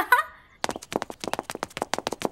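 The tail of a girl's laugh, then about half a second in a quick, uneven run of sharp clicks or taps, roughly nine a second.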